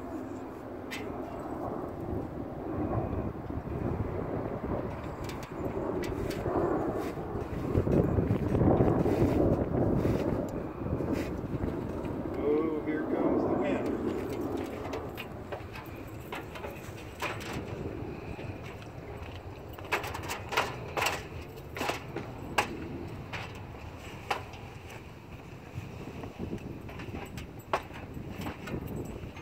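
Handling noise from an aluminium stepladder being moved and climbed while a trailer cover is worked into place: uneven rustling in the first half, then scattered sharp clicks and knocks of the ladder.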